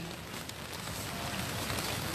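Steady, even background noise with no distinct event: the ambient sound of an outdoor gathering.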